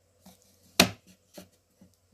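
Several sharp knocks and clicks, the loudest a single heavy thump about a second in.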